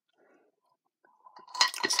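Faint chewing of a candy-shelled chocolate mini egg, then a girl starts speaking near the end.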